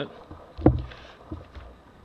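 Large sheet of old newsprint being turned over by hand: a thump as the page or hand comes down about two-thirds of a second in, a smaller one half a second later, and light paper rustling.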